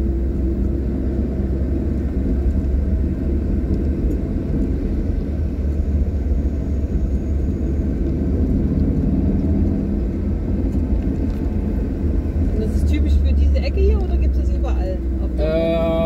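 Steady low road and engine rumble of a car driving along, heard from inside the cabin.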